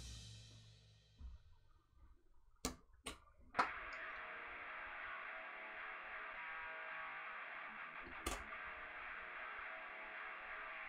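Three short clicks, then quiet background guitar music from about four seconds in.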